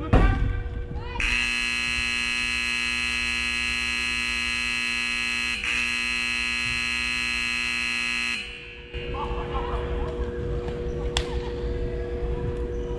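Indoor soccer arena's end-of-game buzzer sounding one long steady blast of about seven seconds, with a brief hitch near the middle, signalling full time. Just before it there is a sharp thump and shouting voices.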